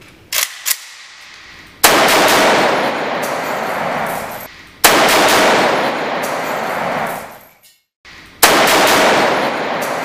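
AK-47 rifle fire at bullet-resistant glass: three loud spells of fire about three seconds apart, each starting sharply and trailing off over two to three seconds. Two small sharp clicks come just before the first.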